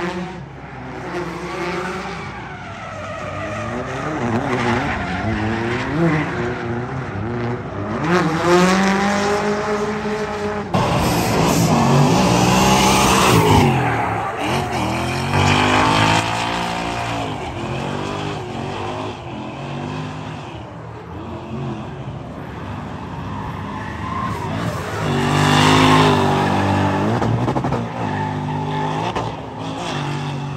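Drift cars' engines revving hard, the pitch climbing and dropping again and again as the throttle is worked, over tyres squealing and screeching under sustained wheelspin. The loudest passes come about a third of the way in and again near the end.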